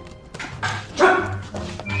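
Short, pained cries and grunts from a man being manhandled, three sharp outbursts in the first second, the loudest about a second in.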